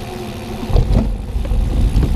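Bicycle tyres rolling on wet pavement with wind rumbling on a handlebar-mounted camera's microphone. About two-thirds of a second in, the rumble turns louder and deeper with a couple of bumps as the wheels roll onto a footbridge deck.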